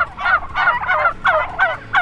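Broad-breasted white turkey calling in a rapid run of short, wavering notes, about five a second.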